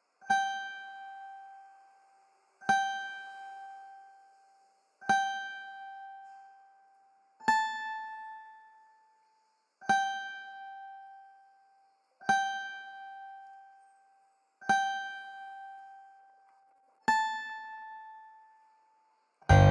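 Single notes plucked on an instrument, eight in all, one about every two and a half seconds, each ringing out and fading; every fourth note is a step higher.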